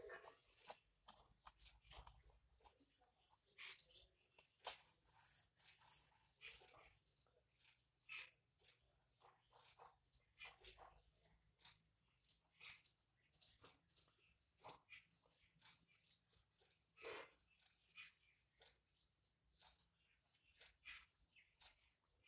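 Very quiet: faint, irregular scratching of a ballpoint pen drawing and writing on paper, in short strokes, with a slightly louder run of strokes about five seconds in.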